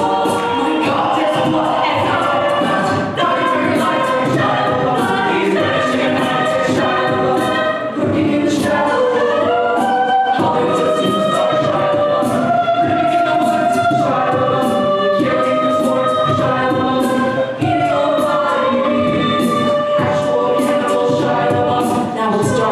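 A cappella vocal group singing in multi-part harmony, a female lead voice at the microphone over the other singers, with no instruments.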